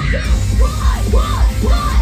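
Loud heavy rock music with a pounding beat and repeated shouted vocals, played live in a concert hall.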